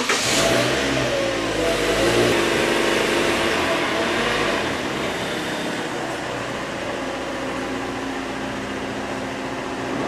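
Toyota SUV's engine running just after starting, its speed wavering at first and then settling to a steady idle as the car backs slowly.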